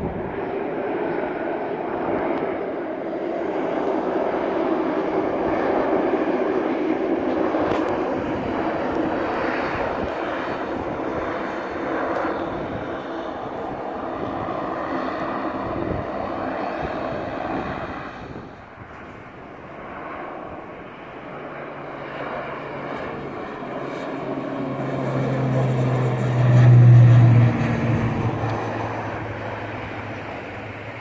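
Turboprop airliner engines and propellers: first a Dash 8 Q400 running on the runway, then a turboprop climbing out after takeoff. The second aircraft's deep propeller drone swells to its loudest near the end and drops in pitch as it passes.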